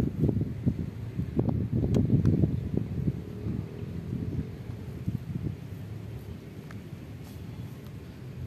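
Wind buffeting the microphone: a low, uneven rumble that gradually eases off.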